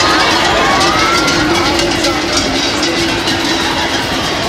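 Running of the bulls in a narrow street: shouting voices over a dense, steady crowd roar, with a rapid clicking clatter throughout.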